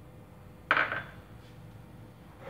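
A single short clatter of kitchenware, a sudden knock with a quick fading tail, about two-thirds of a second in.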